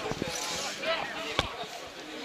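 A football being kicked: a short thud just after the start and a sharper, louder one about one and a half seconds in, with players' shouts on the pitch in between.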